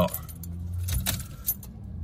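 A bunch of car keys jangling, with a few light clicks as the key goes into the ignition and is turned to the on position.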